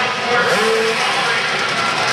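Several small dirt-bike engines running together on an indoor motocross track, their pitches rising and falling as the riders throttle on and off, all blending into one steady din in the hall.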